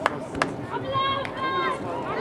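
Voices shouting at a rugby match: one drawn-out, raised call in the second half. Two short sharp knocks come just before it, near the start.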